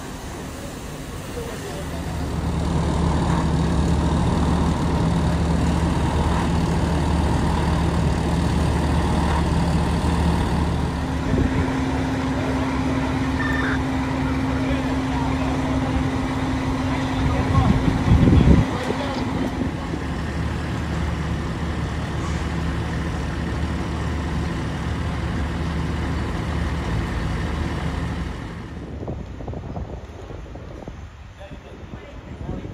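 A fire truck's diesel engine running with a steady low drone, with a second steady tone joining partway through and ending in a brief louder burst. The drone stops shortly before the end.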